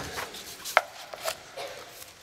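A few soft clicks and light rustles, with one sharper click about three quarters of a second in.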